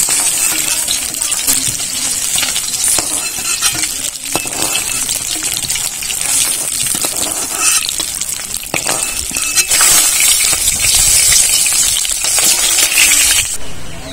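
Fish pieces sizzling in hot mustard oil in an aluminium kadai, with a metal spatula clinking and scraping against the pan as the fried pieces are lifted out. The sizzle cuts off suddenly near the end.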